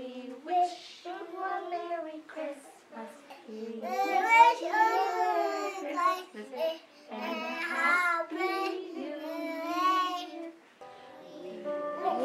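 A small group of young children singing a song together in phrases, with a short break in the singing near the end.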